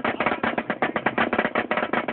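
Marching snare drum played with sticks in a fast, even stream of strokes, about a dozen a second.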